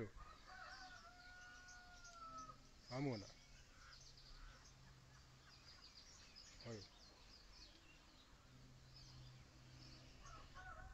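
A distant rooster crowing once, a single long call of about two seconds starting about half a second in, over faint chirping of small birds. Two short voice sounds come at about three seconds and near seven seconds.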